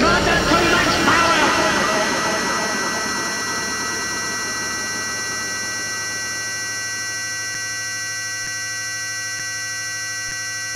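Closing drone of an ambient noise intro track: many held tones that slowly fade and thin out, with short warbling pitch glides in the first second or two.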